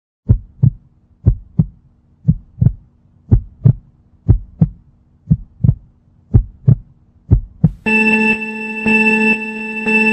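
Heartbeat sound effect: paired low thumps, lub-dub, about once a second. Near the end it gives way to a steady electronic tone.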